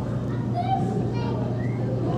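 Indistinct background chatter of children's and other visitors' voices, over a steady low hum.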